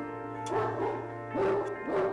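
Great Danes barking in their kennels, about three deep barks, over background music with sustained held tones.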